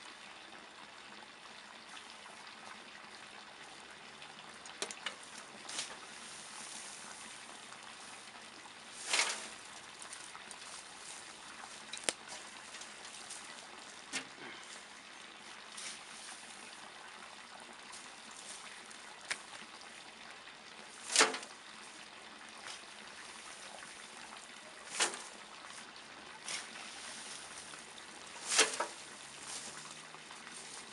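Garden fork working a heap of dry cut grass and roots: dry rustling and scraping, with about four louder swishes as forkfuls of roots are thrown aside, and scattered small clicks of the tines.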